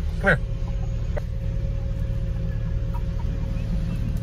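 Steady low rumble of an idling car heard inside the cabin, with a faint steady hum over it.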